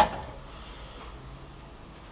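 Steady low background hum in a small room, with a faint low tone for about a second midway and no distinct event.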